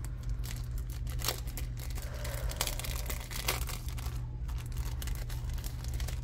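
Clear plastic bag crinkling and crackling as it is pulled open by hand, with many small irregular crackles.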